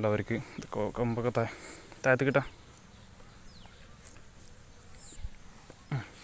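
A man's voice for the first couple of seconds, then a faint outdoor background of insects with a few short high chirps.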